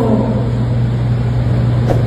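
Steady low hum with an even rumbling noise beneath it, the background picked up by a speaker's podium microphone between phrases. A woman's voice trails off at the very start.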